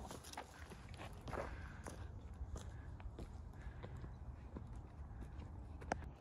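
Footsteps on a dry, rocky creek bed of limestone and gravel, irregular steps over a low steady rumble, with one sharper knock near the end.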